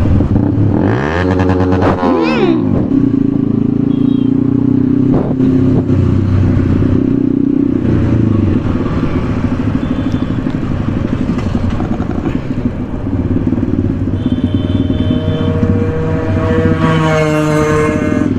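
Motorcycle engines running at idle. About a second in, a rev rises and falls, and near the end another rev climbs.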